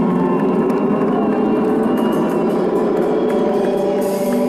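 Live band music played through a concert sound system: a steady wash of long, held guitar tones.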